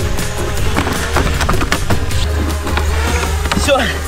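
Background music over the rolling clatter of a large plywood hamster wheel with wooden rungs, with a person running inside it, giving many short knocks. A brief spoken word near the end.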